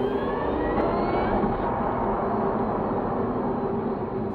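Logo sound effect: a loud, steady whirring rush with a faint rising whine, starting abruptly and easing off near the end.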